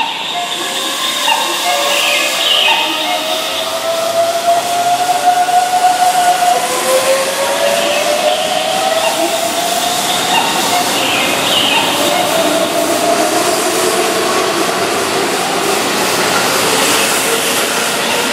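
Keihan 9000-series electric train pulling out of the station. Its VVVF inverter motors whine in tones that rise, drop back and rise again as it accelerates, over steady wheel-on-rail rolling noise.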